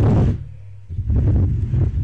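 Wooden board being slid and turned across a tabletop, a low rubbing rumble in two bouts: the first stops about half a second in, the second starts about a second in.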